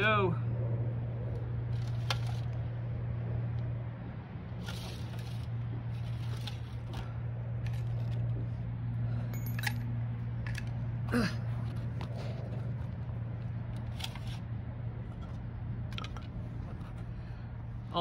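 Small tinder fire of jute twine and cedar shavings burning, with scattered, irregular sharp crackles and pops over a steady low background hum.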